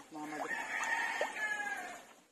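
A rooster crowing once, a long call that holds its pitch and drops slightly as it ends.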